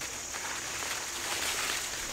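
Corn leaves and husks rustling steadily as an ear of sweet corn is handled among the plants, over a constant high chirping of crickets.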